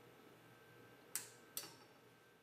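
Faint steady hiss and low hum, broken a little past the middle by two sharp clicks about half a second apart.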